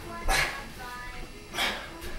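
Two short, forceful exhalations, about a second and a half apart, from a man straining under a 62-pound kettlebell as he rises from a kneel to standing in a Turkish get-up. Faint background music runs underneath.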